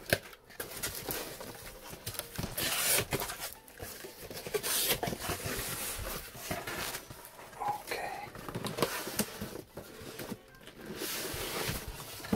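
Unboxing a cardboard shipping box by hand: scissors snip the packing tape near the start, then the cardboard flaps are opened and a boxed set is slid out, with irregular bursts of scraping, rubbing and rustling cardboard.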